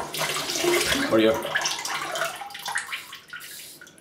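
Water running from a tap into a bathroom sink as the safety razor is rinsed between passes; it tails off after about three seconds.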